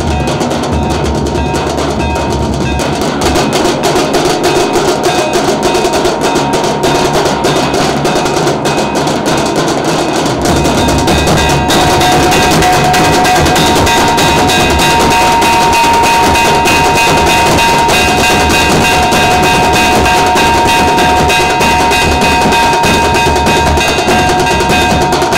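Several large double-headed bass drums beaten rapidly with sticks in a dense, continuous drum roll. The drumming gets louder a few seconds in and again about halfway, where steady high held tones join it.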